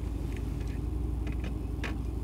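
Mercedes-AMG GT R's twin-turbo V8 idling in park, heard from inside the cabin as a steady low rumble, with a click near the end.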